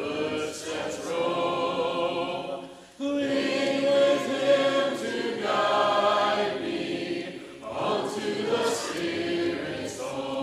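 Church congregation singing a hymn unaccompanied in parts, with short breaks between phrases about three seconds in and again about two seconds before the end.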